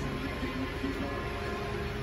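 Faint background music with a few held notes over steady room noise; no distinct mechanical sound stands out.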